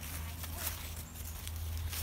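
Footsteps crunching through dry fallen leaves: several short, crackly steps in quick succession, over a low steady rumble.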